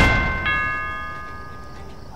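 Doorbell chime ringing: two chime tones about half a second apart, each ringing out and fading away over a second or so.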